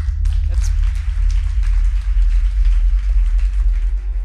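Audience applauding, a dense even clatter of claps over a steady low hum.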